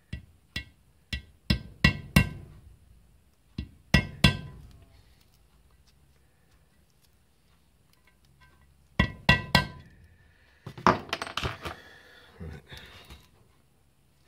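Sharp knocks and clinks of hard objects against an aluminium motorcycle crankcase on a wooden bench: about nine in the first four seconds, three more around nine seconds in, then a longer scraping shuffle as the crankcase half is turned over.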